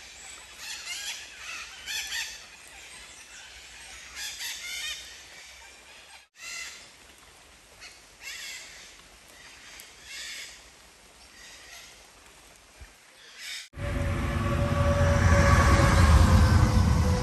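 Birds calling over a quiet background: about eight short, harsh calls spread through the first fourteen seconds. Near the end the sound cuts to a loud low rumble with a man's voice.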